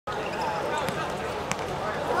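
Football being dribbled and kicked, with two sharp knocks of foot on ball a little under a second in and at about a second and a half, over the voices of players and spectators.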